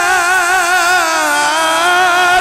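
A man's voice, amplified through a handheld microphone, chanting one long held note with a wavering vibrato that dips slightly in pitch partway through: the drawn-out close of a melodically recited Quranic phrase, 'wa rafa'na'.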